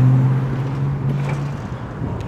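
City street traffic: a vehicle engine's steady low hum over road noise, fading slightly about a second and a half in.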